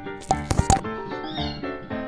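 Children's background music with a steady, repeating beat, broken about half a second in by a brief, loud cartoon sound effect.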